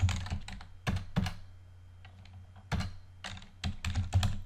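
Computer keyboard keystrokes clicking in short runs as a word is typed, with a pause of about a second in the middle.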